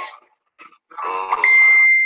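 A steady, single-pitched electronic beep tone starting about halfway through and held for over a second. It is the loudest sound here, coming just after a brief bit of a man's voice.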